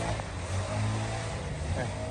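An engine running steadily at idle.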